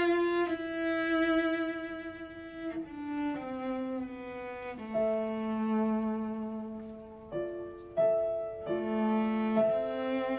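Cello playing a slow melody with vibrato, its notes stepping down in pitch about three seconds in to a long held low note, then moving again near the end, with piano accompaniment.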